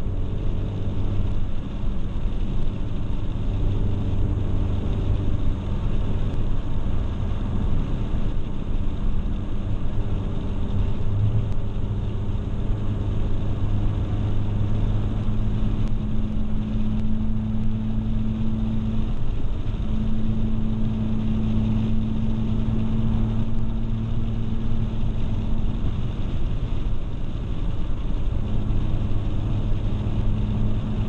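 Car engine and tyre noise heard from inside the cabin while driving uphill on a mountain road: a steady low engine hum over road rumble. The engine's pitch steps up about halfway through, dips briefly, then settles lower near the end.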